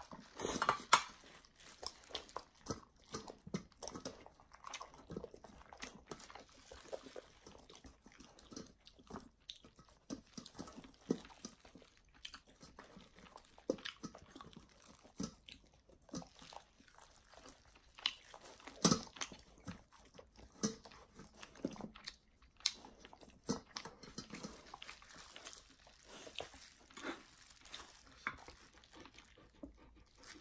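A person eating boiled chicken and noodles: irregular wet chewing and smacking sounds throughout, with a few louder smacks, one about a second in and one a little past the middle.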